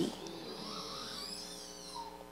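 A pause between spoken sentences: faint room tone with a steady low hum, the echo of the last word dying away at the start.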